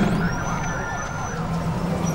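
Sound effects of an animated channel logo outro: a steady low drone, with a thin high whistle that sweeps up just after the start and holds for about a second before cutting off.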